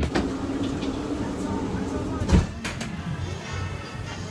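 Noise inside a train carriage: a steady background hum with a single sharp knock a little past halfway.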